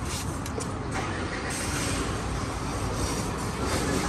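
A vehicle engine running steadily, a low even rumble, with a few light clicks in the first second.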